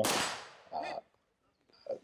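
A single rifle shot right at the start, its echo dying away over about half a second.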